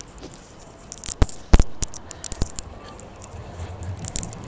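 Handling noise from a handheld phone being moved and turned: a string of small clicks and rubs on the microphone, with two louder knocks about a second and a half in.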